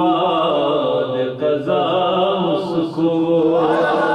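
Male voice singing an Urdu devotional qasida, in long held melodic phrases that glide between notes.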